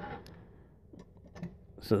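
A few faint, light clicks and knocks as knives and a polymer knife sheath are handled and shifted on a wooden tabletop; a man's voice starts near the end.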